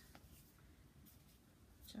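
Near silence, with a faint rustle of paper as a glued construction-paper cut-out is pressed flat onto a sheet by hand.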